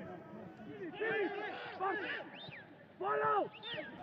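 Men's voices calling out on a football pitch: a few short shouts, the clearest about a second in and again about three seconds in.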